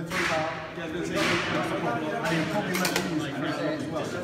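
Indistinct voices talking in a large echoing room, with two short rustling hisses in the first second and a half and a few light clicks near the end.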